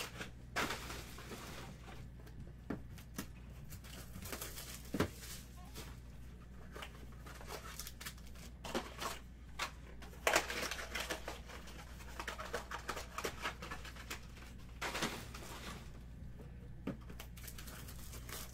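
Foil-wrapped trading-card boxes being handled: irregular crinkling of the foil wrap with light clicks and knocks, over a steady low hum.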